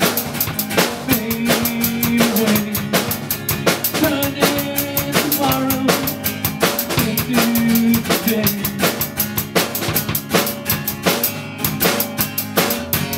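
A surf rock song played live on a drum kit and amplified acoustic guitar: an instrumental passage with a steady, busy beat of bass drum, snare and cymbals under held guitar notes.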